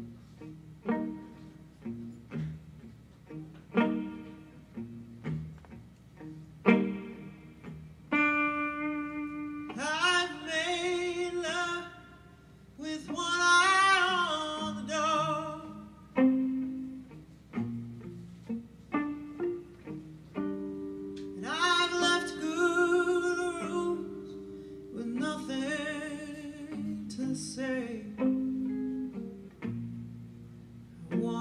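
Live acoustic and electric guitars playing a slow song, opening on single plucked notes. From about ten seconds in, a woman sings long held phrases with vibrato over them.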